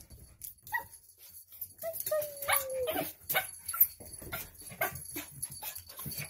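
Toy poodle whining in excitement at its owner's return: a short high whine, then one long whine that slowly falls in pitch about two seconds in. Scattered sharp clicks and taps are heard throughout.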